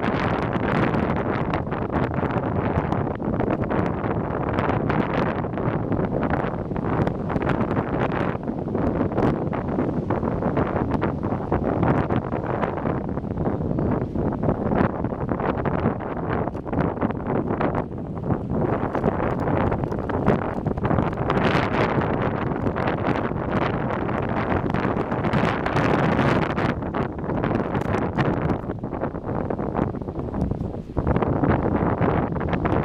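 Wind buffeting the microphone of a handheld camera: a steady, gusty noise that flutters throughout.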